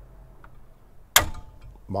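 A single sharp metallic click with a brief ring, about a second in, from the caravan's AL-KO AKS stabiliser coupling head as the Safety Ball anti-theft plug is pushed into it, amid quiet handling noise.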